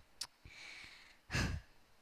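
A woman sighs into a close microphone: a small mouth click, a faint breath in, then a short, loud breathy exhale about one and a half seconds in that blows on the mic.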